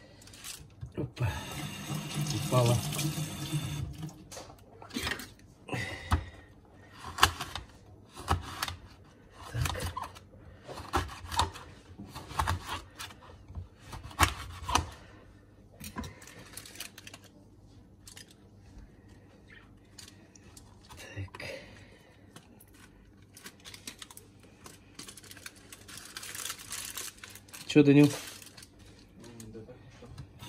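Aluminium foil crinkling in short, sharp bursts, about one a second, as it is folded around a fish, after a longer noisy stretch of handling near the start.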